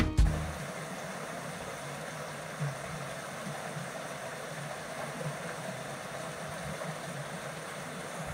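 A small forest stream running, a steady even rush of water.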